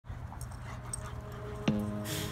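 Two dogs, a long-coat German Shepherd and a springer spaniel, making play noises as they wrestle, over the quiet opening of an electronic music track with low steady notes. A sudden louder note comes in near the end.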